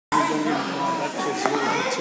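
Several children's voices chattering and calling over one another.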